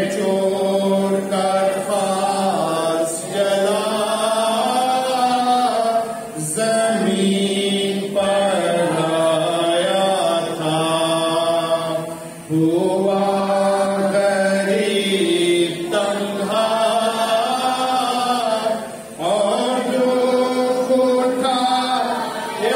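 A man singing a slow Urdu hymn without instruments, holding long notes in phrases broken by short breaths about every six seconds.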